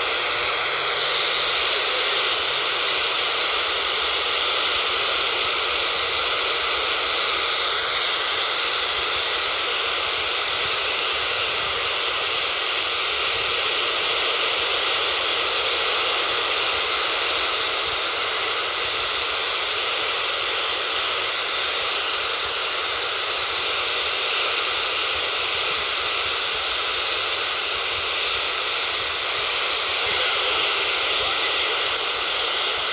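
Steady hiss of radio static from a handheld scanner's speaker, tuned to CB channel 35 (27.355 MHz AM) with no station transmitting. A faint steady whistle sits under the hiss.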